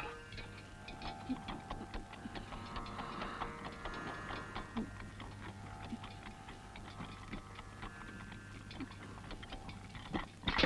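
Faint, irregular ticking and clicking, a few clicks a second, over a low steady hum and some faint held tones.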